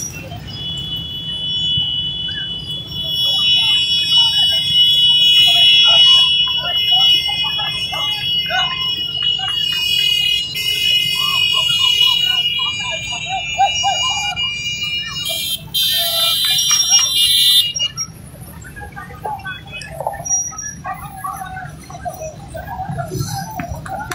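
Sirens sounding in long, steady high-pitched tones for about 17 seconds, ending just after a short burst of loud hissing noise. Voices chatter faintly underneath.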